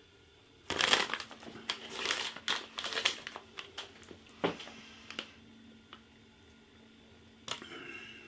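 Metallised plastic crisp bag of Takis Fuego crinkling as a hand rummages in it and pulls out a rolled tortilla chip: irregular rustles starting about a second in and stopping after about five seconds.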